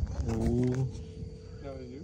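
A man's voice making drawn-out wordless vocal sounds: a long held one starting about a quarter of a second in, then a shorter one that dips in pitch near the end.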